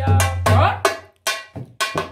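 Dholak, a two-headed barrel drum, played by hand: a rhythmic run of sharp, ringing strokes over a deep bass tone, thinning to a few lighter strokes in the second half.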